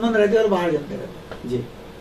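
Only speech: a man talking in Hindi for under a second, then a short pause broken by one brief sound of his voice.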